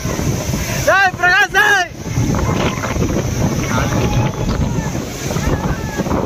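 Waterfall pouring into a pool, a steady heavy rush of water with wind buffeting the microphone. About a second in, a voice shouts three short calls in quick succession, each rising and falling in pitch.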